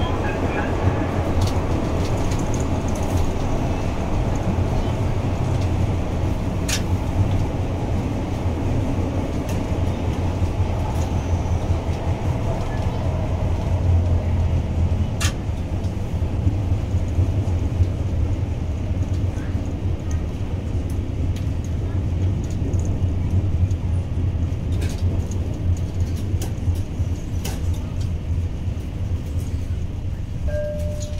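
Tyne and Wear Metrocar running through a tunnel, heard from inside the car: a steady low rumble of wheels and running gear, with a few sharp clicks from the track. The train draws into the station platform near the end.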